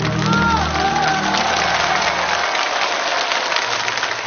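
Studio audience applauding as the song's accompaniment ends, its last low notes dying away about two and a half seconds in while the clapping carries on.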